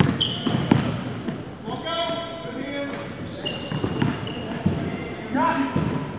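Live gym sound: a basketball bouncing on a hardwood court, with short sneaker squeaks and players calling out to each other.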